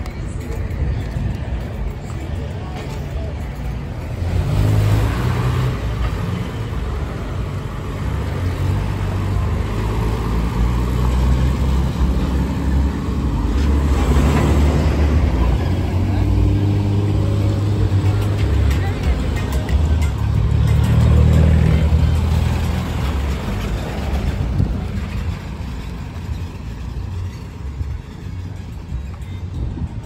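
Road traffic passing close by: the engines of large vehicles such as a bus and a truck running as they drive past, with swells about 5, 14 and 21 seconds in.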